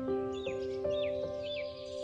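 Soft piano music with a bird calling over it: a short, falling call repeated about twice a second.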